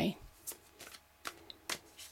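A deck of tarot cards shuffled by hand, heard as a few soft, separate card clicks.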